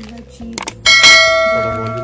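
Two quick clicks, then a single bright bell ding just under a second in that rings on and slowly fades: the click-and-chime sound effect of an animated subscribe button and notification bell.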